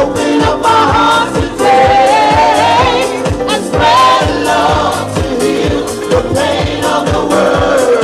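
Live house music performed on stage: a steady dance beat, about two strokes a second, under several singers singing together through microphones, the lead voice wavering with vibrato over the backing voices.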